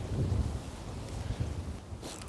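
Wind rumbling on the microphone in uneven gusts over the steady wash of wind-blown open water.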